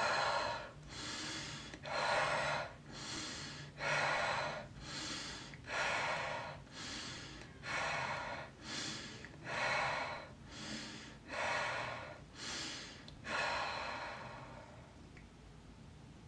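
A woman doing a quick, forceful breathing exercise: rapid deep breaths in and out, each a rush of air, about one a second with every other one louder. The breathing stops about 14 seconds in.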